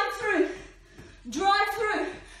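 A woman's voice making drawn-out wordless vocal sounds: one fading out just after the start and another in the second half.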